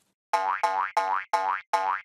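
Cartoon "boing" spring sound effect for a pogo stick bouncing, repeated five times at about three per second, each boing rising in pitch.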